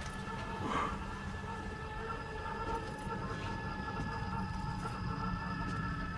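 Ominous film-score drone: several steady held tones over a continuous low rumble.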